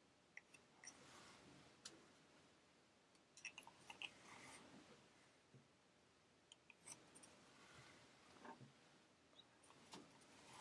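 Near silence with faint scattered clicks and light rustles from handwork: a tapestry needle and yarn being worked around a small round wooden weaving loom.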